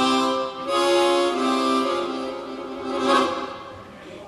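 Chromatic harmonica playing a short demonstration phrase of held notes and chords, changing a few times in the first three seconds before it dies away.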